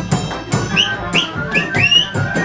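Romanian folk band playing a fast dance tune, a drum and cymbal keeping a quick beat. In the second half four short, high rising whistles sound over the band.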